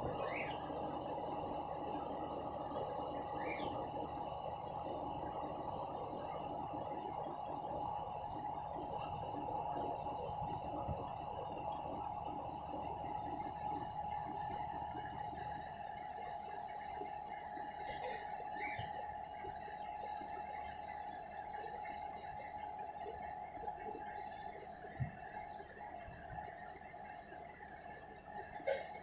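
Steady background hum with a constant mid-pitched tone, broken by a few brief faint high chirps and one soft knock near the end.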